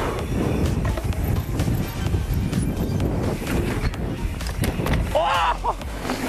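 Mountain bike tyres rolling over a leaf-covered dirt trail, a low uneven rumble, with a brief voice about five seconds in.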